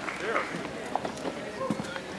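Indistinct voices talking quietly, with a few light knocks.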